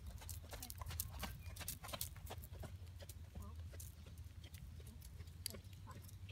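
Horse cantering on a longe line over sand footing: a run of soft, irregular hoofbeats, over a steady low rumble.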